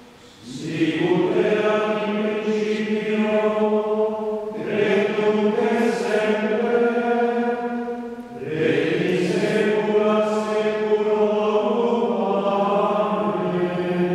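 Ambrosian chant sung in Latin by the clergy, in three long sustained phrases that each begin after a short breath: about half a second in, again at about four and a half seconds, and again at about eight and a half seconds.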